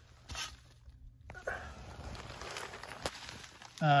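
Faint rustling and scraping from someone moving and handling a camera in a cramped space, with a sharp click about three seconds in.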